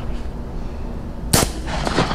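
A single 12-gauge shotgun slug shot about a second and a half in: one sharp crack with a brief ring after it.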